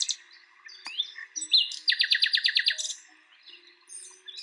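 Songbirds singing outdoors, with scattered chirps and one rapid trill of about ten quick descending notes around the middle.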